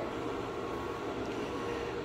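Steady low background hum and hiss with no distinct knocks or clicks.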